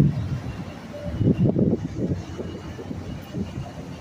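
Low, uneven rumble of a large motor yacht's engines as it cruises past, surging loudest at the start and again between one and two seconds in.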